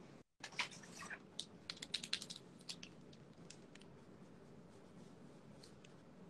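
A quick run of light taps and short scratches from a drawing implement on paper as a sketch is begun, thinning out after about three seconds to faint room hiss.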